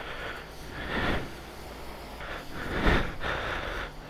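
Jet-wash lance spraying foam onto a motorcycle, hissing in swells as the jet sweeps across the bike, loudest about a second in and again near the three-second mark.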